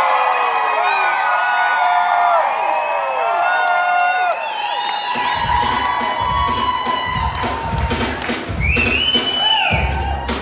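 Audience cheering and whooping. About halfway through, music with a beat starts and carries on to the end.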